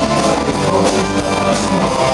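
Rock band playing live: electric guitars over a drum kit, loud and with a steady beat.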